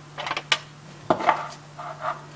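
Aluminium foil crinkling and tearing as a sheet is pulled from the roll and pressed over a packed hookah bowl, in a few short rustling bursts with a sharp click about half a second in.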